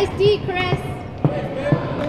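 A basketball bouncing on a hardwood gym floor, three thuds about half a second apart, among players' and onlookers' voices.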